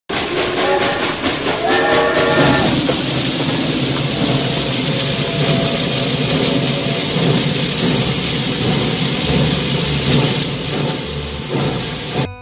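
Steam train sound effect: a steam whistle blows twice in the first couple of seconds over quick regular beats, then a loud, steady hiss and rumble of the running train that dies down near the end.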